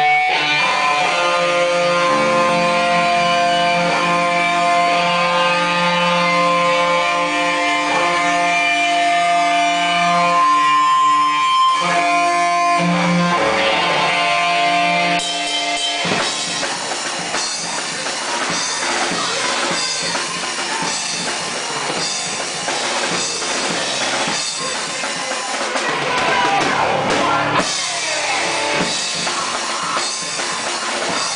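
Rock band playing live in a small room: for the first half, steady held chords ring out, then about halfway through the full band comes in with drums and guitars in a loud, dense section.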